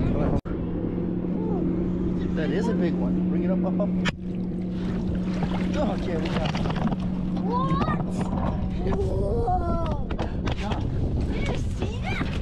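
Yamaha 115 outboard motor running at a steady low idle, giving a constant hum under the voices. The hum drops out for an instant near the start and fades about three-quarters of the way through.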